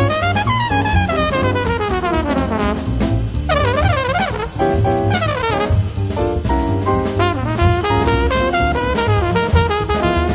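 Jazz trumpet soloing in fast runs that sweep down in pitch, with a rapid wavering passage a few seconds in. Drum kit and a walking low bass line accompany it.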